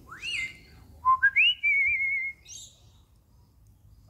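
African grey parrot whistling. A quick rising whistle comes first, then a climbing run of three notes that ends in a wavering held note, and it stops about two seconds in.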